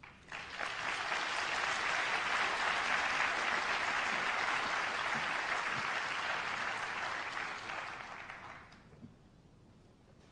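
Audience applauding after a talk: the clapping builds up within the first second, holds steady, and dies away about eight to nine seconds in.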